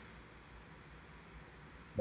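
Faint steady hiss and low hum of room tone, with one faint tick about one and a half seconds in.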